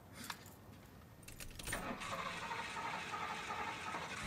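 Car keys jingling and a click at the ignition of a classic car, then the starter cranking the engine from about halfway in.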